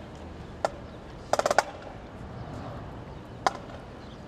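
Drumsticks clicking: a single sharp click, then a quick run of four or five clicks, then another single click, over steady outdoor background noise.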